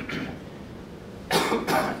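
A man coughs twice in quick succession, about a second and a half in.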